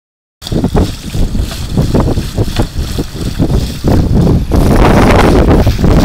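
Water splashing up around a flooded drain cover as a child jumps up and down on it, a series of sharp splashes with each landing that run together into a continuous spray about halfway through. Heavy wind buffeting on the microphone underneath.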